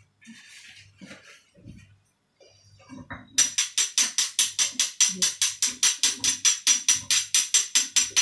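Pestle pounding in a mortar: after a few seconds of soft handling sounds, a fast, even run of sharp, bright clacks starts, about five strokes a second.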